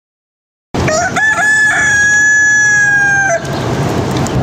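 A rooster crowing once, starting under a second in: a few short broken notes, then one long held note that drops off and stops at about three and a half seconds.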